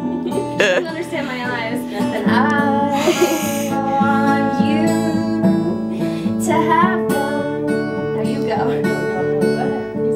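Acoustic guitar playing sustained chords, with a woman's voice coming in over it every couple of seconds.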